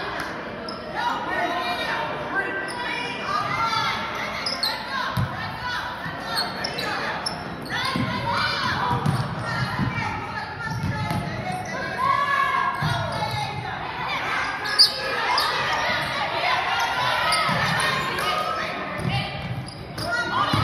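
A basketball bouncing on a hardwood gym floor during live play, among players' and spectators' voices calling out that echo around the gym. One sharp, loud impact about three-quarters of the way through.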